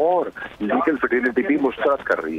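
Speech only: a man talking over a telephone line, the voice thin and cut off above the middle range.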